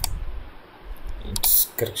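Computer mouse clicks: a sharp click at the start, then a louder cluster of clicks about one and a half seconds in.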